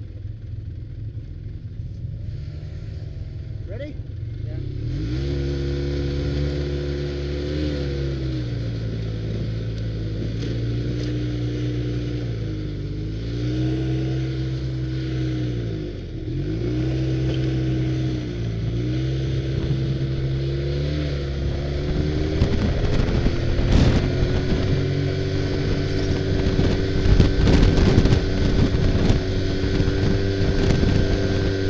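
Snowmobile engine from the rider's seat: running low for the first few seconds, then pulling away about five seconds in, its pitch dipping and rising several times with the throttle. From about two-thirds of the way through it holds a higher steady speed, with wind on the microphone and knocks from the trail.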